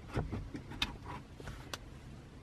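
A few faint plastic clicks and scuffs as a BMW Business CD radio head unit is slid by hand into its slot in the dashboard.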